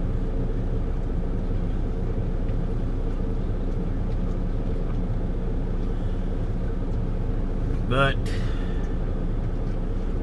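Steady low engine hum inside a semi-truck's sleeper cab, even and unchanging. A single spoken word comes near the end.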